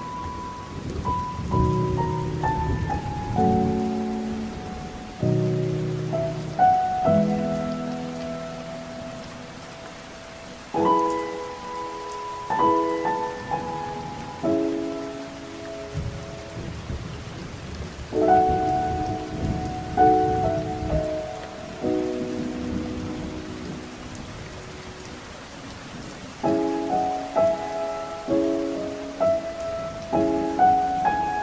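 Solo piano playing a slow, gentle melody in short phrases of notes that ring and fade, over steady rain, with low rumbles of thunder.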